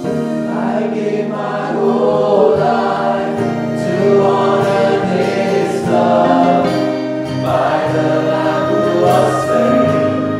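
Congregation singing a worship song in unison over held accompaniment chords.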